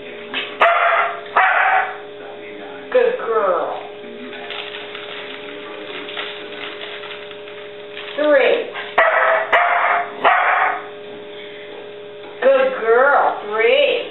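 A dog barking in short, yelping barks that slide down in pitch, in several bunches: about three near the start, one around three seconds in, a run of four around eight to ten seconds, and two or three more near the end.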